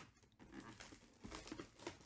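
Faint crinkling and rustling of a clear plastic bag and a cardboard box being handled, with a few light clicks in the second half.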